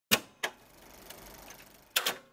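Cassette player sound effect: two sharp mechanical clicks like a play button being pressed, then a faint tape hiss, then two more clicks near the end.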